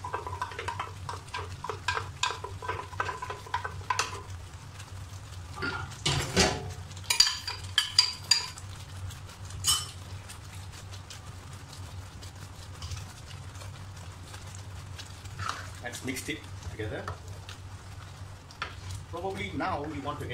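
Ground onion and dried-chilli paste frying in oil in a wok, bubbling and sizzling as its water cooks off. A spatula stirs the paste and knocks against the wok several times about six to ten seconds in, the loudest sounds here.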